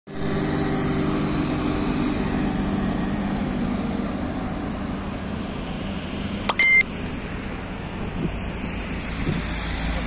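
Steady street traffic noise with a vehicle engine running close by, and one short, loud, high-pitched beep about two-thirds of the way in.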